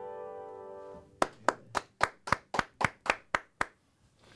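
A held keyboard chord dies away over the first second, then one person claps about ten times at a steady pace, roughly four claps a second.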